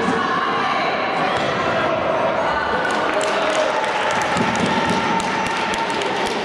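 Players and spectators calling out, their voices echoing through a large sports hall, over the thuds of a futsal ball being kicked and bouncing on the wooden court. Sharp short taps join in from about halfway through.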